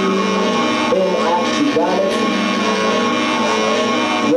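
Live music in a club with wordless vocal sounds from two performers into cupped microphones: pitched, wavering voices over a continuous musical backing, with no words.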